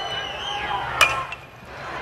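A metal college baseball bat hitting a pitch once, about a second in: a single sharp metallic ping as the ball is chopped into the ground.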